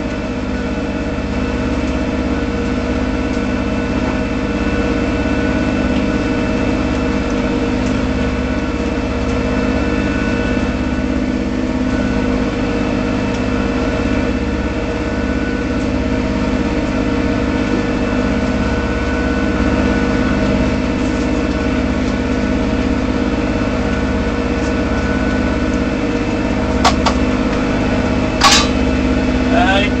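A sailboat's inboard diesel engine running steadily under way, heard from inside the cabin as a constant hum with a fixed pitch. A few sharp clicks sound near the end.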